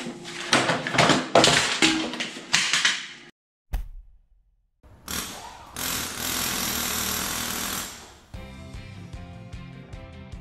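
Clattering knocks as a fibreglass-wrapped plastic fuel tank is handled and pulled about on a workbench, stopping after about three seconds. After a short silence comes a title sound effect: a steady hiss for about two seconds, then music.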